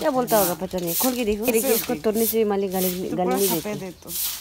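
A woman's voice making drawn-out, wavering sounds with no clear words, holding some tones for nearly a second. Short bursts of high hiss come about every second and a half.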